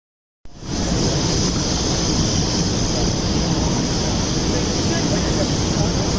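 Steady outdoor street noise with a strong hiss and a low rumble, starting suddenly about half a second in; no single event stands out.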